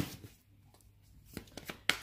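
A deck of tarot cards being handled: a sharp tap at the start, then a few small clicks and card rustles, with a sharper click near the end.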